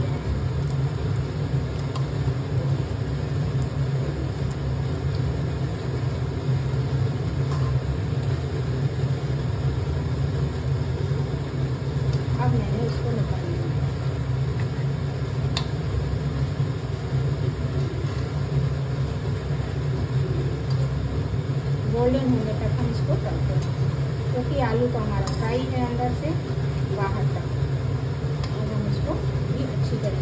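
Kitchen chimney (range hood) fan running with a steady low hum, over the fainter sizzle of bread rolls deep-frying in hot mustard oil.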